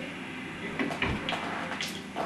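A few short knocks and one low thump from fairground ride parts being handled as the ride is taken down.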